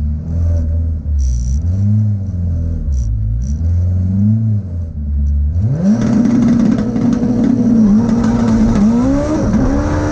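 Turbocharged 3S-GTE four-cylinder of a Toyota Celica GT-Four ST185 drag car, heard from inside the cabin: revved in a few short rises at the starting line, then about halfway through it launches and pulls hard with climbing pitch, dropping briefly at two quick gear changes near the end.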